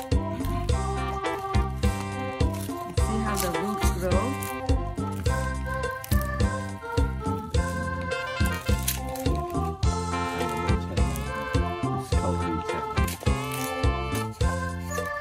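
Background music: a melody over a bass line with a steady beat.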